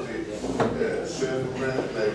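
A person speaking at a council meeting, with one sharp click about half a second in.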